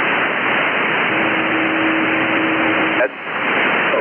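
Static from an Elecraft K3 transceiver in lower sideband on the 40-metre band, heard between stations while the receiver is tuned down the band: a steady hiss, with a steady low tone about a second in that lasts about two seconds. The hiss drops briefly near the end.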